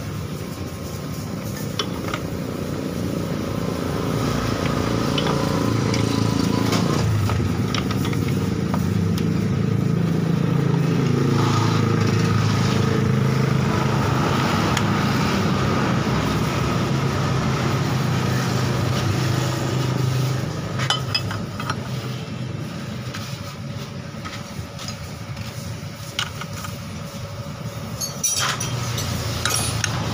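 Honda Beat FI scooter engine running with the CVT cover off. It rises to a higher, louder run about five seconds in, holds there until about twenty seconds, then settles back to idle. A few metallic clinks come near the end.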